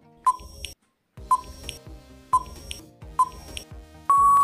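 Quiz countdown-timer sound effect: four short, high beeps about a second apart over a soft backing track.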